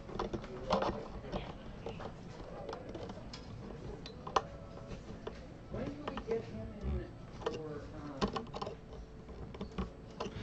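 Guitar tuning machines being turned by hand to wind a string onto a short tuner post, giving scattered small clicks and ticks.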